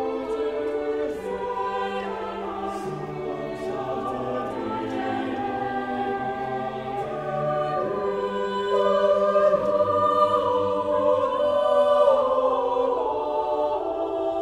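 Church choir singing sacred music in several voice parts, holding long notes that shift slowly from chord to chord. It grows louder about two-thirds of the way through.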